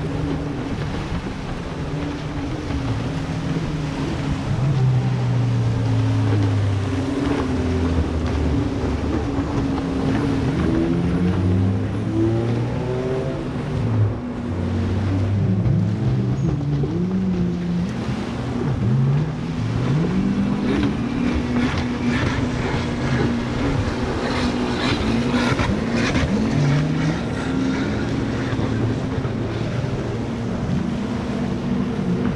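Several jet ski engines racing at once, their overlapping pitches rising and falling as they rev up and ease off.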